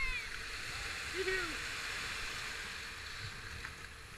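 Rushing white water churning around a kayak running a rapid, a steady hiss of broken water, with brief shouted calls near the start and about a second in.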